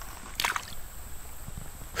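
A brief splash in shallow creek water about half a second in, as a caught bass is let go from the hand and kicks free.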